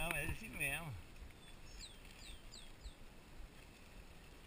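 A person's voice sounds briefly in the first second. Then, about two seconds in, a bird calls four quick, high whistled notes, each falling in pitch.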